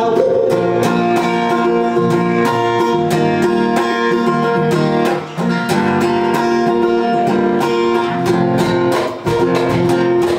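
Acoustic guitar strummed in a steady rhythm, with a cajón keeping the beat.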